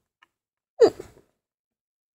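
A child's short vocal sigh with falling pitch, heard once about a second in; otherwise near silence.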